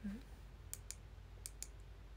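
Four light, sharp clicks in two quick pairs, after a brief hummed voice sound at the very start, over a faint steady low hum.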